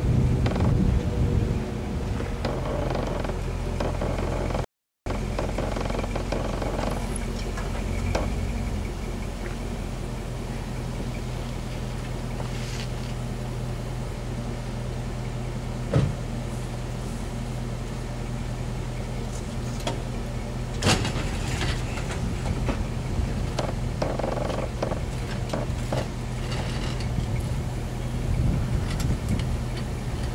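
Car engine idling steadily, with two sharp clicks or knocks about halfway through, five seconds apart. The sound cuts out briefly about five seconds in.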